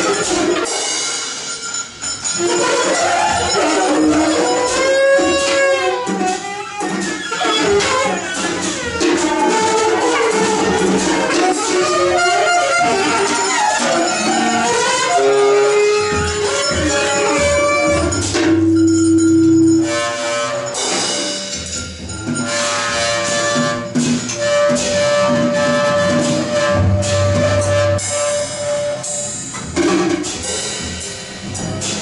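Free-improvised jazz played live by saxophone, bowed cello and drum kit: bending, sliding pitched lines over scattered cymbal and drum strokes, settling into several long held notes in the second half.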